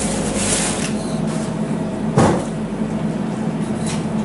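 Butcher's shop handling sounds: a plastic bag rustling around meat, then a single sharp thump about two seconds in, over a steady low hum.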